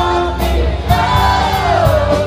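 Live band playing: a singer holds a long note that slides down in the second half, over a steady drum beat, bass and electric guitar.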